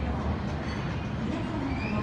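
Escalator running, a steady low mechanical rumble.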